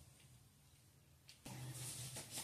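Near silence, then about a second and a half in, faint rubbing or handling noise comes in over a low hum.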